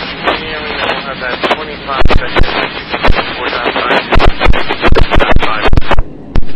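Railroad two-way radio transmission: a voice broken up by static and heavy crackle, with many sharp loud pops throughout.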